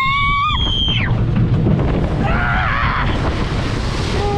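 Riders screaming as a log flume boat plunges down its drop: one long, high scream that breaks off about half a second in, then another shout partway down, over a steady rushing rumble of the descent. The noise rises near the end as the boat hits the water in a big splash.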